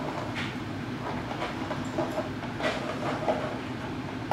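A small dog chewing and mouthing a plastic bottle, which gives irregular crackling crunches of the plastic about every half second to second.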